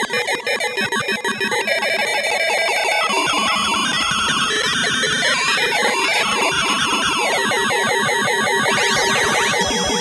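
Yamaha FB-01 FM synthesizer module playing its "HUMAN+" voice: a dense, clashing cluster of tones that pulses rapidly for the first second or two, then sustains, with sweeping pitch glides near the end.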